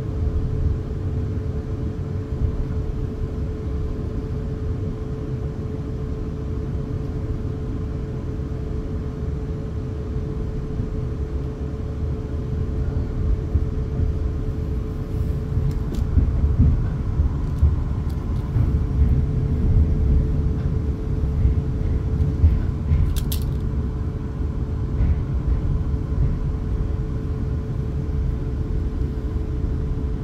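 Cabin sound of a Class 450 Desiro electric multiple unit on the move: a steady low rumble of wheels on track with a constant hum, growing louder past the middle, and a brief high-pitched squeak about three-quarters of the way through.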